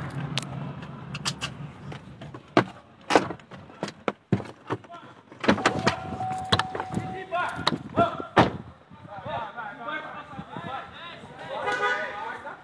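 Sharp knocks and bangs, like car doors, scattered through, over a low car-engine hum that fades away in the first second. Faint raised voices come in during the second half, and a brief steady beep sounds about six seconds in.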